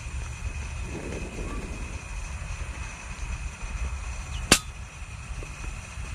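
A single suppressed rifle shot about four and a half seconds in: one sharp, short crack. A steady low rumble of wind on the microphone runs under it.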